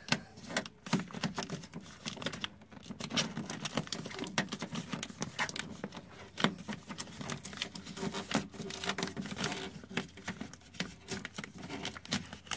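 Plastic door vapor barrier sheet being slowly peeled off the inner door skin: continuous irregular crackling and rustling as the sheet pulls free of its adhesive.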